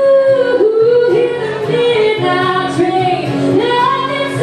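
A woman singing a slow song live with acoustic guitar accompaniment. It opens on a long held note, then the melody moves through shorter phrases.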